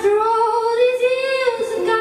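A woman singing a long held note that rises slightly and then steps down to a lower note near the end, accompanied by a strummed ukulele.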